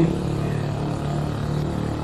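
A pause in speech filled with steady background noise: an even hiss with a low, constant hum.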